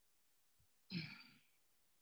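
A person's single short sigh. The breath out starts suddenly about a second in and fades away over about half a second, against near silence.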